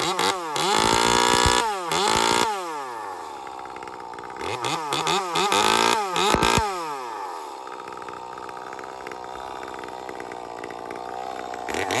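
Ported Echo 2511T top-handle two-stroke chainsaw revved off the wood: a quick blip, then two high revs held for a second or two, each falling back. It then idles steadily for about four seconds before revving up again at the end.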